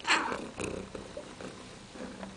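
A domestic cat purring right up against the microphone, with a short loud noise at the very start.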